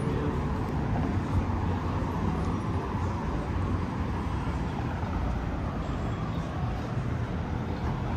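City road traffic: a steady low rumble of cars passing on nearby streets.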